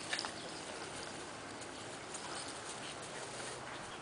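Two miniature dachshund puppies play-fighting on grass: faint puppy noises and scuffling over a steady hiss, with a few short, sharp sounds right at the start.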